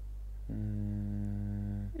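A man humming one steady, low, closed-mouth "mmm" at a single pitch for about a second and a half, starting half a second in.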